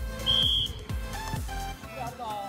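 Background music with a beat and deep bass hits. Over it, one short, high, steady whistle blast a quarter of a second in, a referee's whistle signalling the kickoff of a match.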